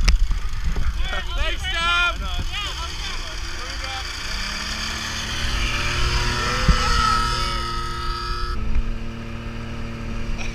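People's voices for the first few seconds, then a ski-patrol snowmobile's engine running at a steady pitch.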